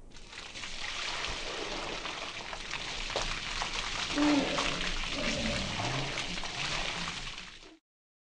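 Water pouring from above and splashing onto people's clothes, a steady splashing rush, with a short burst of a woman's laughter about four seconds in. It cuts off suddenly near the end.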